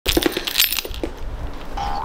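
A quick series of light clinks and rattles from small hard objects, clustered in the first second and thinning out, with a brief steady tone near the end.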